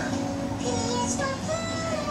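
Electronic tune from a baby walker's toy tray: a simple melody of clean, held notes, with a low steady tone under the first second.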